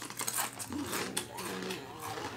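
Doritos tortilla chips being bitten and chewed: a run of quick, crisp crunches.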